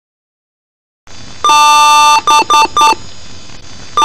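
Computer BIOS power-on self-test beep code, heavily processed into a loud chord of several tones: one long beep followed by three short beeps. A low hum comes up about a second in, and the long beep starts again at the very end.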